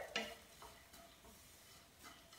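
Faint stirring of a dry mixture in a nonstick frying pan with a wooden spatula, with a light knock of the spatula just after the start and soft scraping after it.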